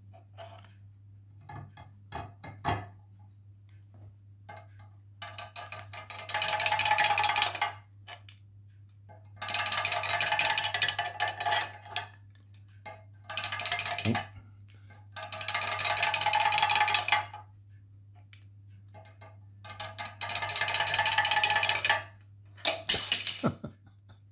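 A 3D-printed plastic rabbit slope walker clattering down a slate slope in rapid taps, five runs of about two seconds each. Single knocks come between the runs as it is picked up and set back at the top.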